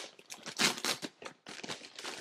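Plastic shipping mailer crinkling and rustling as a hand works inside it and draws out the plastic-wrapped contents, in irregular bursts, loudest a little past half a second in.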